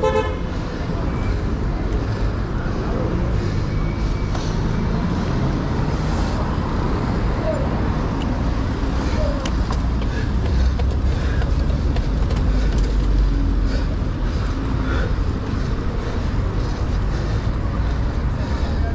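City street traffic heard from a moving bicycle, with a steady low rumble of wind on the microphone. A short toot sounds right at the start.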